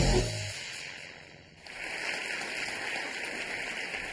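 Electronic theme music fading out over the first second or so. About a second and a half in, studio audience applause starts and carries on steadily.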